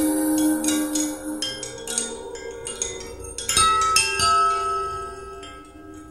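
Sparse music of struck, bell-like mallet percussion, played through Cerwin-Vega XLS-15 floor-standing loudspeakers in a room. Quick strikes ring on for the first few seconds, with two stronger strikes past the middle, then the notes fade away toward the end.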